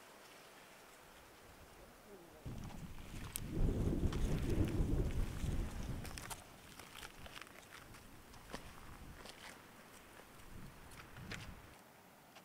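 Wind gusting on the microphone as a low rumble for about three seconds, starting a couple of seconds in. Then footsteps clicking and crunching on loose rock, with a smaller gust near the end.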